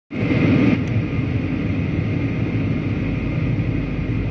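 Steady cabin noise inside a Boeing 737-800 descending to land: a low rumble of its CFM56 jet engines and the airflow, a little louder and hissier for the first moment before settling.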